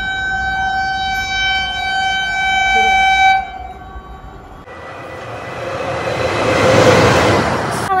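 Train horn sounding one long steady blast of about three seconds. After a short lull comes the rushing rumble of an arriving train, which grows louder and peaks near the end.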